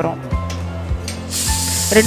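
Stovetop pressure cooker venting steam past its weight valve: a loud hiss starts over a second in and keeps going, the sign that the cooker has come up to pressure. Background music plays underneath.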